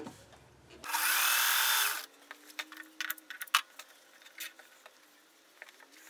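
Sewing machine running briefly for about a second, then stopping, followed by scattered light clicks and rustles of fabric being handled.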